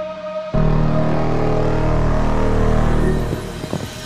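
A race car's engine cuts in about half a second in with a deep, pulsing rumble over background music. It holds steady, then dies away near the end into a scatter of sharp crackles.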